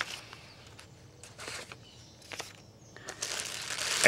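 Clear plastic packaging bags crinkling in short, irregular bursts as they are handled and lifted out of a cardboard box, getting busier near the end.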